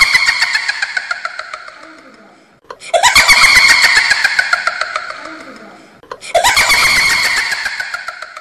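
A dubbed sound effect played three times in a row, each about three seconds apart: every repeat starts abruptly with a rising squeal and trails off in fast, falling pulses.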